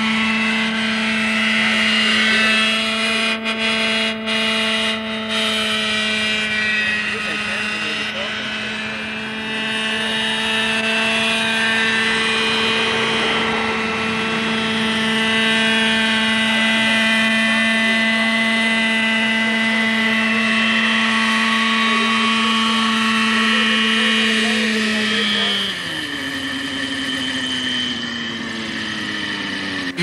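Graupner Heli-Max 60 model helicopter's two-stroke glow engine and rotor running at a steady high pitch while it hovers and flies. About 25 seconds in the pitch falls as the engine throttles back to land, gliding lower until near the end.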